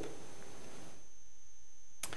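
Steady low hum of room tone with a faint, steady high-pitched whine, and no other event.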